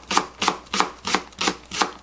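Kitchen knife slicing a green onion into thin rounds on a cutting board: about six even cuts, roughly three a second, each a sharp tap of the blade on the board.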